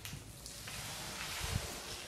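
Faint rustling with a soft low thump about one and a half seconds in: handling noise from a hand-held camera carried at walking pace.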